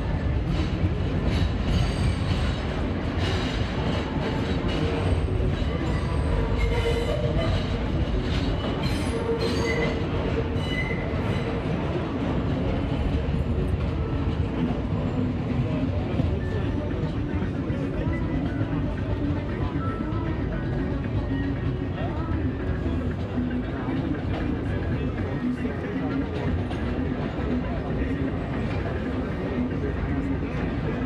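R32 subway train running at speed, heard from inside a crowded car: a steady, loud rumble of wheels on rail, with a few brief high squeals in the first ten seconds or so.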